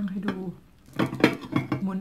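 Metal fork scraping and clinking against a plate as it picks flesh off a fried fish's bones, with a quick run of sharp clicks about a second in.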